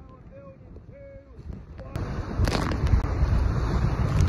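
Wind buffeting the phone's microphone, with rushing water, as a racing catamaran sails fast through choppy sea; it starts suddenly about halfway through and is loud, with a few sharp gusts or slaps.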